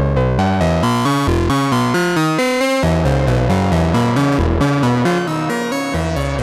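Novation Bass Station II analog synthesizer playing a fast repeating sequence of short notes, about five a second, with oscillator error at full, so each note is randomly detuned by up to nearly a semitone and sounds out of tune. About halfway through the tone smears and fills out as the filter knob is turned.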